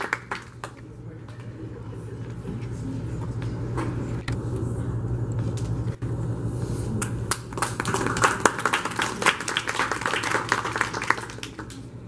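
Audience applauding: a few scattered claps at first, then denser, steady clapping through the second half, over a low steady hum and murmur in the room.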